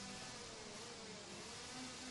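Faint, distant buzzing of racing kart engines on the circuit, a steady drone with a slightly wavering pitch.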